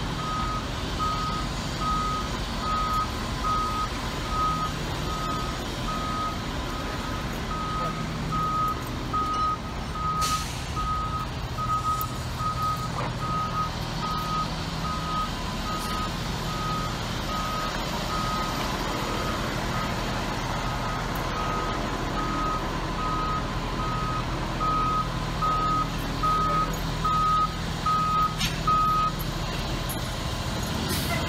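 Backup alarm of a fire truck beeping steadily at an even pace while the truck reverses, over the low hum of its idling diesel engine. The beeping stops about a second before the end.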